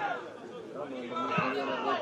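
Several voices shouting and calling over one another on an open football pitch: players calling to each other during play. A short dull thud comes about one and a half seconds in.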